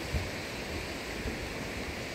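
Steady rushing of river water flowing over rocks, with wind buffeting the microphone in irregular low rumbles.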